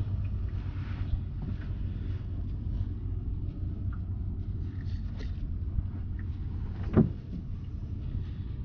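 Steady low rumble of a small boat's engine running, with one brief louder sound about seven seconds in.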